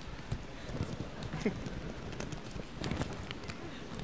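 Scattered light clicks and knocks from a sheet of paper and a handheld microphone being handled, over a low murmur of voices in the room.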